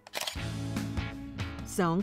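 A sharp click with a short swish, a transition sound effect, then background music starting with a steady bass line; spoken narration begins near the end.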